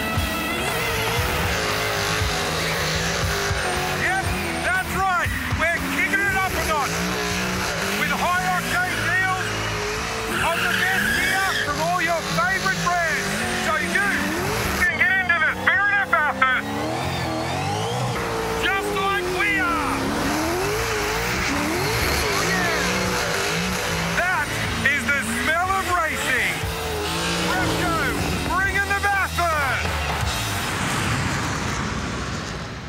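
An advertising soundtrack mix of music with a race car's engine revving and tyres squealing.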